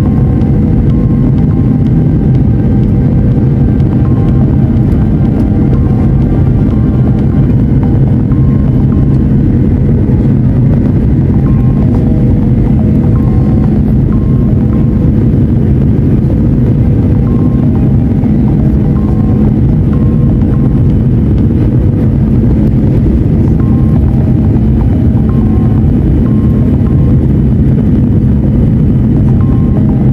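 Steady low roar of a jet airliner's engines and airflow heard inside the cabin at a window seat beside the engine, with background music playing over it.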